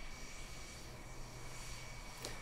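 Faint, steady jet engine noise with a thin high whine from the KF-21 fighter jet on the ground.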